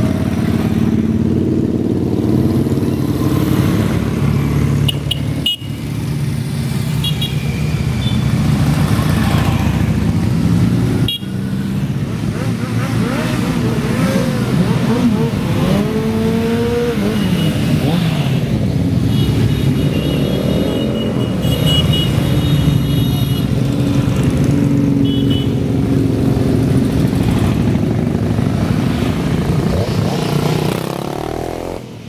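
A procession of motorcycles riding past one after another, their engines running steadily with some revving that rises and falls in pitch. A few short horn toots sound along the way.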